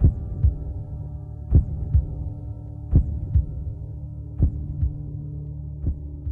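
Slow heartbeat sound effect, a double thump about every second and a half, five beats in all, over a low steady drone.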